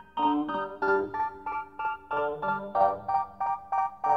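Instrumental music: a keyboard playing short, detached notes and chords, about three a second, with no singing.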